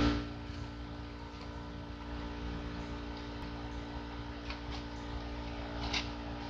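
A steady low hum made of several fixed tones, with a few faint footsteps on gravel in the second half as a person walks up.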